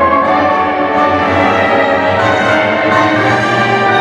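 Orchestral tango music with violins and brass, played over a loudspeaker.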